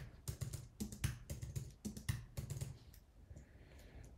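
Typing on a computer keyboard: a quick run of separate key clicks that thins out and grows quieter near the end.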